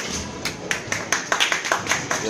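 A small group of spectators clapping, a few scattered claps at first, then quicker and denser: applause at the end of a squash game.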